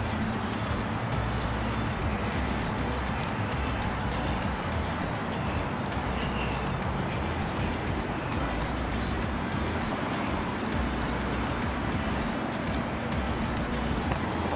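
Background music with a steady low bass line, over a constant rush of outdoor noise.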